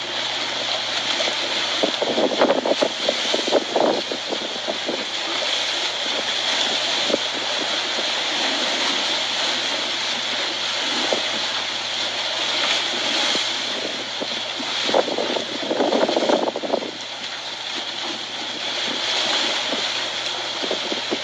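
Choppy floodwater surging over a stone waterfront walkway in strong wind: a steady rush of wind and water, with louder surges of waves sloshing and slapping about two seconds in and again around fifteen seconds.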